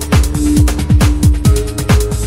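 Deep techno DJ mix: a steady four-on-the-floor kick drum pulse under held synth tones, with crisp hi-hat ticks between the beats.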